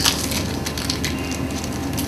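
Steady background hiss and low hum of room tone, with faint crackle and no distinct event.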